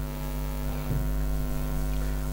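Steady electrical mains hum in the recording, a low drone with a ladder of evenly spaced overtones that holds unchanged throughout.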